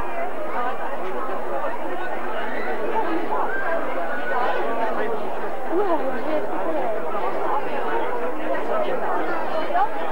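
Spectators chattering: many overlapping voices with no clear words, at a steady level.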